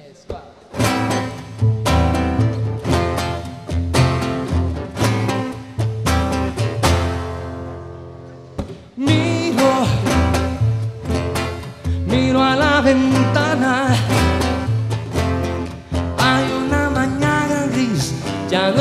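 Live acoustic guitar and double bass playing a song's introduction: strummed chords over plucked bass notes, ringing down to a short lull about seven seconds in, then starting up again about nine seconds in.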